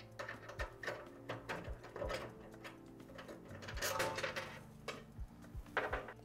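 Scattered small metal clicks and taps as an Allen key works screws out of an aluminium bar bracket and the loose hardware is handled, with a denser run of clicks about four seconds in.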